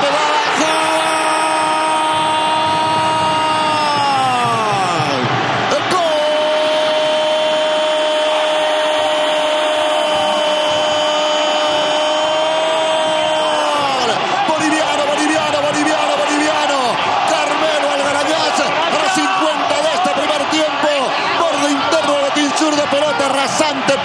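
Football TV commentator's long drawn-out goal cry: a held note of about four seconds that drops off as his breath runs out, then a second held note of about eight seconds that also falls away, followed by shorter excited shouts. It is the call for a penalty converted into the right post.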